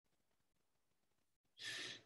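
Near silence, then about one and a half seconds in, a man's short, soft breath.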